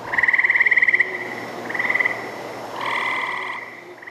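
Frog trilling: three short pulsed trills, each under a second long, with a fourth starting at the end, over a faint steady low hum.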